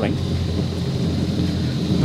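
Yamaha 242 Limited jet boat's engines idling with a steady low rumble, mixed with wind buffeting the microphone.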